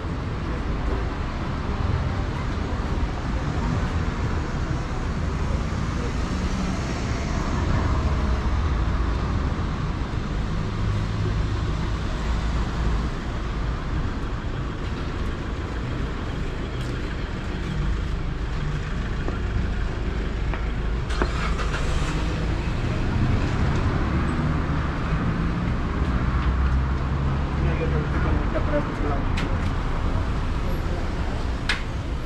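Busy street ambience: steady traffic rumble from cars on the road alongside, with the voices of passers-by mixed in and a few short knocks about two-thirds of the way through.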